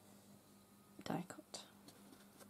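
A woman's voice speaking one word softly about a second in, over a faint steady hum; otherwise quiet.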